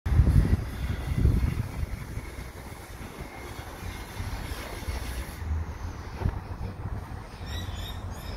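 Low outdoor background rumble, heaviest in the first second and a half and then steadier, with a few faint higher chirps near the end.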